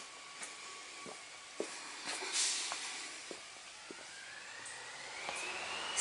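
Footsteps on a brick cobblestone path, a little under two steps a second, over a faint steady hiss, with a brief rush of noise about two seconds in. Over the last couple of seconds a thin whine rises in pitch and then holds steady.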